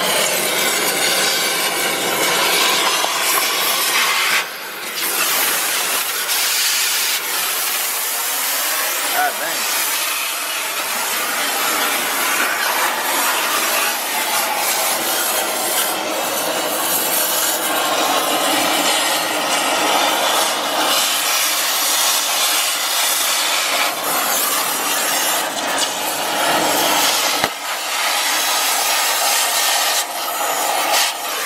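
Oxy-fuel cutting torch running steadily as it burns through an old shock absorber's top mount, whose studs are broken off, with a short break twice.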